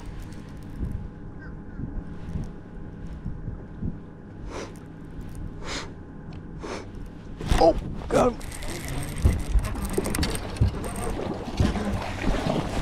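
A hooked bass thrashing and splashing at the surface after striking a glide bait, a rushing, splashy hiss through the last few seconds. Before it come a few short knocks and a brief voice, over a steady low hum.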